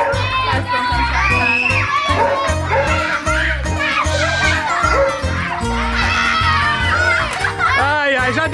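Several children shrieking and shouting excitedly over background music with a steady bass beat.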